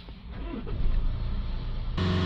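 Land Rover Discovery Sport diesel engine starting up and rising in revs toward about 3,000 rpm. The revs are held up so the particulate filter's back-pressure can be read after it was filled with DPF cleaning fluid.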